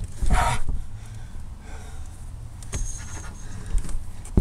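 A sharp breath of effort about half a second in, then faint clicks and a brief thin squeak as a stiff camper-van side window latch is pushed and strained at without giving way.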